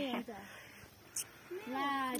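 A young woman's voice: a spoken phrase trails off, a short quiet pause follows, and near the end a drawn-out, rising vocal sound leads into more words.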